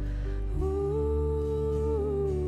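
Live worship song: a woman's voice holds one long note, starting about half a second in, over a steady low sustained accompaniment.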